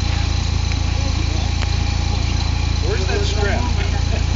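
Hummer H3 engine idling with a steady, even low rumble. People talk faintly near the end.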